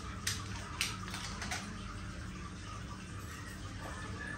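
Steady low room hum with a few faint, short clicks in the first second and a half, as small piercing instruments or jewelry packaging are handled with gloved hands.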